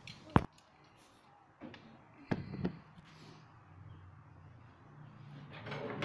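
A sharp click, then a few short dull knocks as the metal pump motor housing is handled and set down on a steel bench vise.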